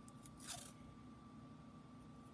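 Washi tape being peeled off its roll in one short tearing burst about half a second in, with a few faint clicks of handling around it.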